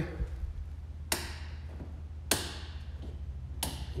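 Aircraft strobe lights ticking as they fire: three sharp ticks about a second and a quarter apart, over a low steady hum.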